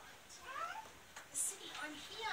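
A high-pitched voice speaking with sliding, upward-swooping pitch, with a short hiss about midway.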